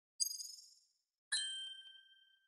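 Two chime dings of a logo intro sound effect. A high, bright ding fades within about half a second. About a second later a lower ding rings out more slowly.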